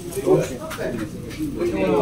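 Indistinct voices of several people talking at once in a crowded shop, no single clear speaker.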